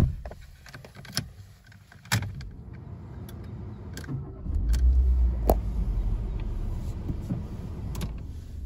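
Renault Clio engine cranking and catching about four and a half seconds in, loudest as it fires, then settling into a steady idle. A few sharp clicks of the key and ignition come before it.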